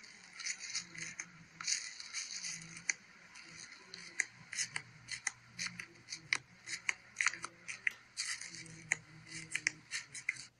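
Fingers pressing into airy, bubble-filled slime in a plastic tub, making a busy, irregular run of crackles and pops as the air pockets burst.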